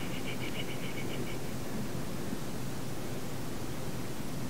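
Steady hiss of an old lecture recording in a pause between sentences. A short, rapid, high-pitched beeping of two tones together runs for about the first second, then stops.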